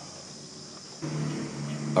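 Quiet background with a faint steady high-pitched buzz of insects, and a low steady hum that comes in about a second in.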